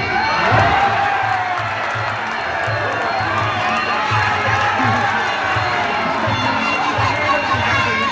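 Fight crowd cheering and shouting over Muay Thai ring music, with a steady, evenly repeating drum beat under the voices.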